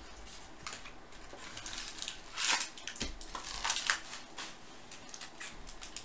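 A cardboard trading-card box is torn open and its foil-wrapped card packs are handled. The result is irregular rustling, tearing and crinkling, with the loudest bursts about two and a half and four seconds in.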